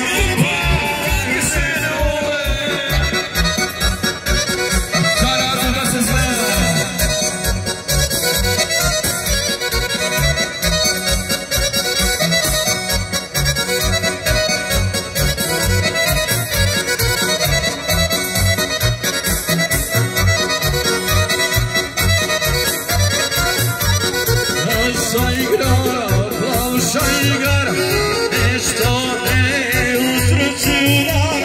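Lively accordion-led Balkan folk music for a kolo circle dance, played over a steady bass beat.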